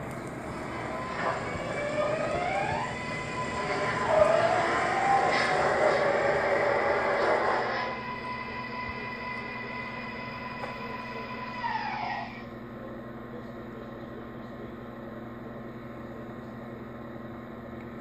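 MTH R-142A O-gauge model subway train pulling away on its track: a motor whine rises in pitch for about two seconds, holds steady, and falls away about twelve seconds in. Under it runs the rumble of the cars rolling on the rails, loudest in the middle and fading as the train draws off.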